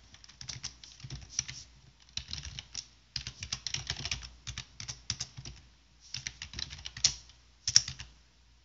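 Computer keyboard typing: quick runs of keystrokes broken by short pauses, with a couple of louder key strikes near the end.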